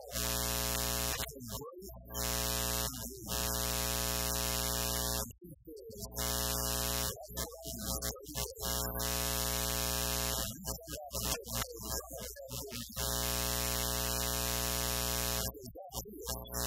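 A man preaching over a loud, steady electrical buzz with many even overtones. The buzz drops out in short gaps several times, and his voice shows through there.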